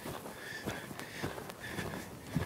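Faint hoofbeats of two horses loping on arena dirt: soft, irregular thuds.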